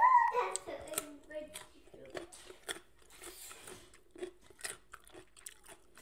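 A short pitched vocal sound at the very start, then a person chewing a crunchy slice of raw vegetable, with irregular wet clicks and crunches from the mouth.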